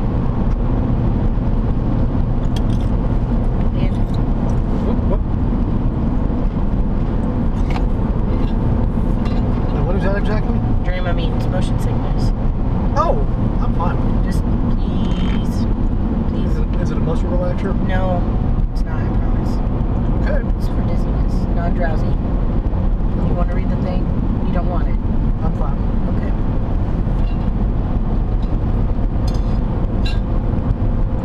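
Steady road and engine noise of a car driving at highway speed, heard from inside the cabin as a continuous low drone.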